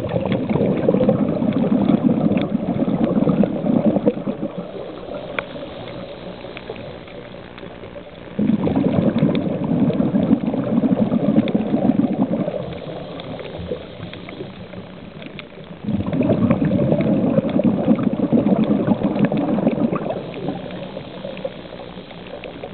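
Scuba diver's exhaled breath bubbling out of the regulator underwater, in three bursts of about four seconds each, roughly every eight seconds, following the breathing rhythm. Between the bursts, under the inhalations, a faint steady drone and scattered small clicks remain.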